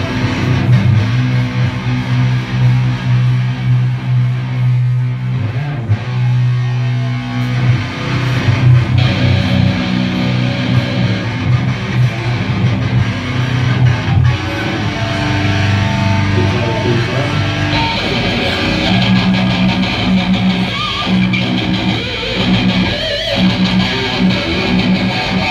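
Electric guitars and bass guitar played live through amplifiers, mostly long held chords that change every few seconds.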